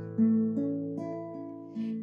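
Instrumental music between sung verses: acoustic guitar chords ringing. A new chord is struck just after the start and another about a second in, each fading slowly.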